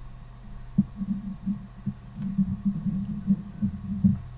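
Low, irregular bass pulses throbbing over a steady hum, starting about a second in and stopping at the end.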